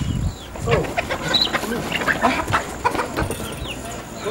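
Chickens clucking, with many short, quick chirps and scattered clicks.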